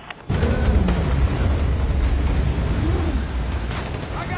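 Film soundtrack: a sudden heavy explosion about a quarter of a second in, then a long low rumble, as air-dropped bombs strike.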